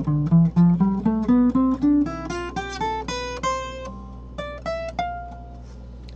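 Guitar playing single notes up a half-diminished pentatonic scale pattern, about four notes a second, climbing steadily in pitch for about three and a half seconds. A few more notes follow near the end, the last one held.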